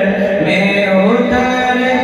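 A man singing a naat, an Urdu devotional song, into a microphone, holding long notes that bend slowly in pitch.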